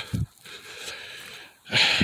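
A pause between speech with a short, breathy inhale near the end, just before the man starts talking again.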